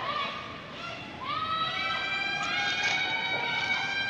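Curling stone sliding over pebbled ice while two sweepers brush the ice in front of it. About a second in, several steady high ringing tones come in and hold.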